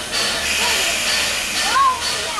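Steam locomotive approaching, giving off a steady hiss of steam through most of the two seconds.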